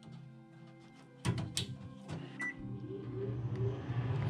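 Clicks of a wire connector being plugged onto a 21-volt AC microwave turntable motor, a short high beep, then the motor starting with a low steady hum that grows louder: the replacement motor is turning.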